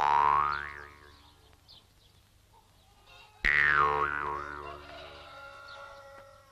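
Two comic musical sound effects on the film's soundtrack. The first starts suddenly right at the start with a pitch that slides upward and fades within about a second. The second starts suddenly about three and a half seconds in, dips, wavers up and down, and fades slowly.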